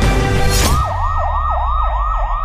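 Music with a beat, cut off less than a second in by an electronic siren in a fast yelp that sweeps up and down about three times a second.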